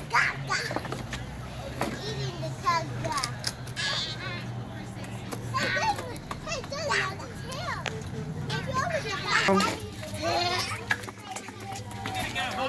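Young children playing, babbling and calling out in high voices, with short squeals, over a low steady hum.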